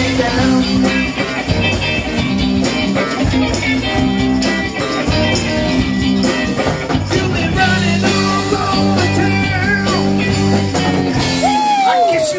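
Live rock band playing a blues-rock groove on electric bass, drum kit and electric guitar, with no lead vocal line. A note slides down in pitch near the end.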